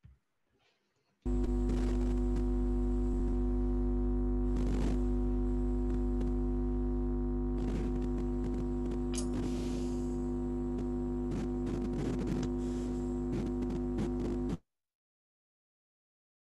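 A steady electrical mains hum with a buzzy stack of tones, picked up on an open microphone on a video call. It comes in suddenly about a second in and cuts off abruptly near the end, with a few faint ticks over it.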